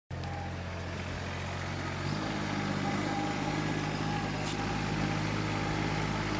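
John Deere ride-on lawn mower's engine running steadily; its note steps up in pitch about two seconds in.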